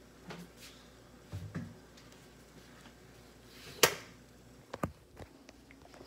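Handling noise: a few soft knocks and clicks, with one sharp click a little under four seconds in and two more shortly after.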